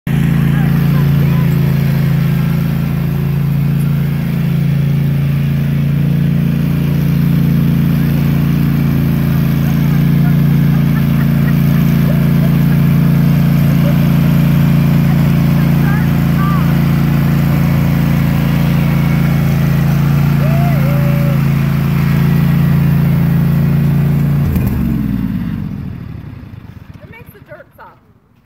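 Riding lawn tractor's small engine running steadily, then switched off about 24 seconds in, its pitch dropping as it winds down to a stop over a couple of seconds.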